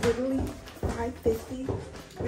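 A girl's voice talking in short phrases.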